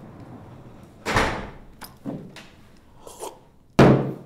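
Sudden bangs or knocks in a room, four of them: one about a second in, two smaller ones after it, and the loudest just before the end, each dying away within half a second.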